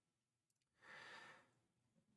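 Near silence with one soft breath about a second in, taken between sentences of narration.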